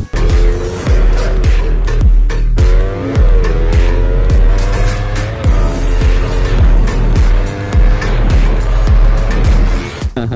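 Sport motorcycle engine running at high revs, its pitch rising and dipping a little, mixed with loud music with a heavy bass beat.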